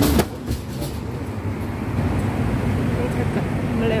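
City street traffic: a steady low rumble that drops in level suddenly just after the start, then runs on more quietly. A voice starts speaking near the end.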